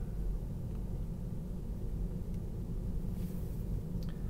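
Steady low road and tyre noise inside the cabin of a Tesla Model 3 electric car moving slowly, at about 20 mph.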